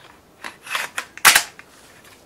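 Slide of an H&K P30L pistol being run onto its frame rails by hand: a short sliding scrape, then a sharp metallic clack about a second and a quarter in.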